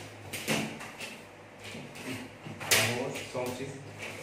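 Plastic pattern-drafting rulers handled on kraft paper: picked up and set down, with two short knocks and scrapes, the louder one near three seconds in.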